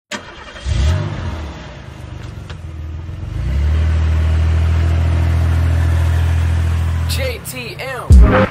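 A car engine starting and then running steadily with a low drone. A short voice comes in near the end.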